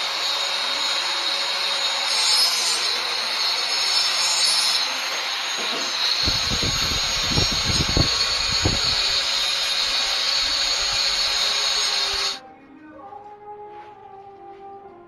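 Electric angle grinder running steadily with a high whine while its disc grinds down the end of an orange PVC pipe, shaving off the excess. A few low thumps come in the middle, and the grinder cuts off suddenly near the end.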